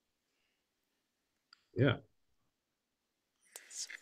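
A single soft spoken "yeah" about two seconds in, then the breathy start of "it's" near the end; between the words the audio drops to dead silence.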